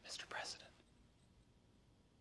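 A brief whisper lasting under a second at the start, then faint room tone.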